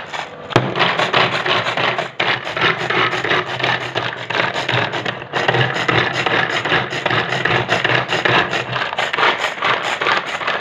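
Small garlic chopper mincing garlic cloves in its plastic bowl: a continuous rasping rattle of the blades through the garlic, starting about half a second in, with brief breaks near 2 and 5 seconds.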